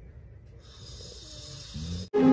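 Snoring from a sleeping man and dog lying together: low rumbling breaths, a breathy hiss about half a second in, and a brief squeaky snort near the end.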